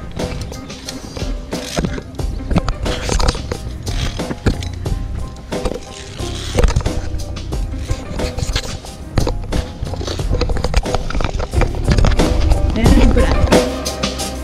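Background music, with repeated clicks and scraping of via ferrata carabiners on the steel safety cable running through it.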